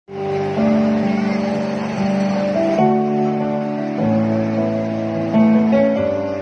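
A live keyboard and string ensemble plays a slow instrumental passage of held chords that change every second or so, without singing.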